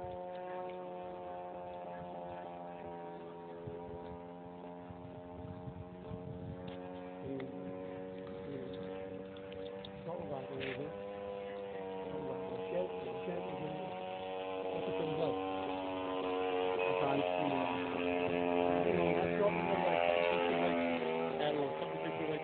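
Petrol engine of a large radio-controlled Extra aerobatic model plane running in flight, a steady drone whose pitch shifts slightly with the throttle. It grows louder in the second half as the plane comes nearer.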